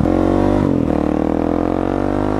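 2017 Husqvarna 701 Supermoto's single-cylinder engine running under way through its aftermarket exhaust. The note breaks about two-thirds of a second in, then its pitch climbs slowly as the bike accelerates during a break-in run.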